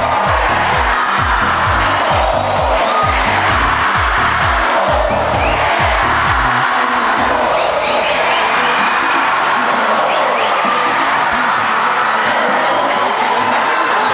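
Dense, steady crowd noise from a packed indoor futsal gym. A dance-music bass beat runs underneath for the first half and cuts off about six and a half seconds in.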